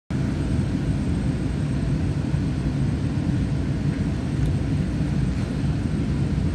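Steady low rumble inside the passenger car of an EMU900 electric multiple unit commuter train, with no distinct events.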